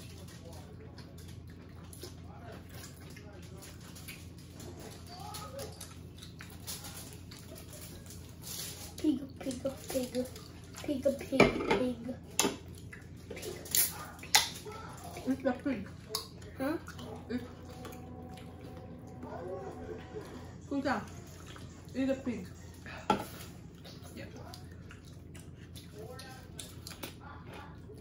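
People eating roast pig by hand at a table: chewing and lip-smacking, with short mouth noises and a few sharp clicks of dishes or a drink can on the table, over a steady low hum. The eating sounds come mostly in the middle of the stretch, busiest between about 9 and 23 seconds in.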